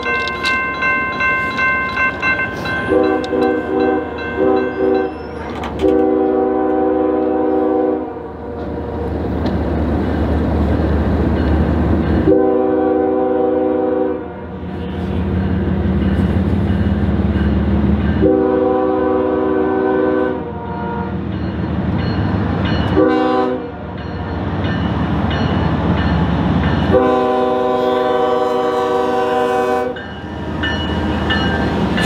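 Norfolk Southern diesel locomotive sounding its horn for a grade crossing in the long, long, short, long pattern as it approaches, its engine rumble growing louder between the blasts. A crossing bell rings in pulses during the first few seconds.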